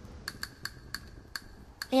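A series of light, irregular ticks, about seven in a second and a half, each with a faint ring, over a low background. A voice starts just at the end.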